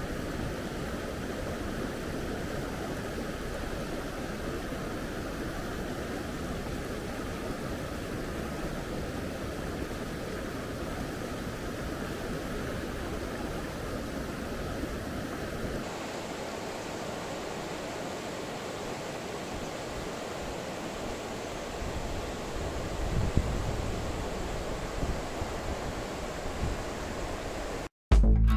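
Mountain stream rushing steadily over rocks in shallow riffles. A little past halfway the sound changes abruptly, and a few low thumps come through near the end.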